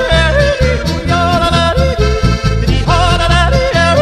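Slovenian folk polka-band music, a passage without lyrics: a melody in two-part harmony with vibrato over a steady, evenly pulsing oom-pah bass.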